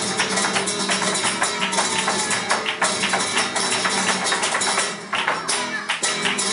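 Live flamenco without singing: rapid percussive footwork and rhythmic hand clapping (palmas) over a flamenco guitar and cajón. The strikes come densely throughout, and there is a brief lull about five seconds in.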